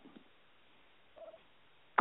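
A pause in speech: near-silent room tone with one brief faint sound a little past a second in.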